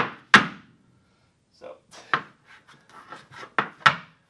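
Irish dance hard shoes striking a wooden dance floor: two loud beats at the start, a pause of about a second, then a quicker run of lighter taps ending in two loud beats near the end.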